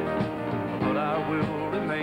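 Country music: a band with acoustic guitar playing an instrumental passage between sung lines.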